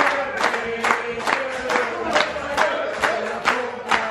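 A group clapping in unison, about two or three claps a second, while singing together, a birthday song for one of the diners.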